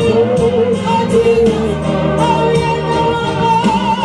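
A woman singing a gospel song into a microphone, held notes with vibrato, over accompaniment with a regular beat.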